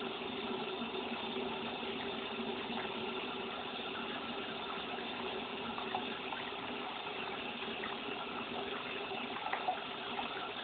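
Water running steadily from a tap as makeup brushes are washed, with a couple of small knocks near the end.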